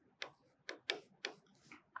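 Marker pen strokes on a whiteboard while writing: four or five short, irregular ticks.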